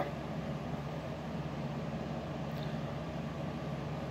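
Steady low hum with a faint hiss: room background noise, unchanging throughout.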